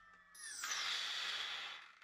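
The brushless-motor-driven flywheel of a 3D-printed control moment gyroscope spins down after its power is cut. It makes a whirring hiss with a high whine that falls in pitch, fading away shortly before the end.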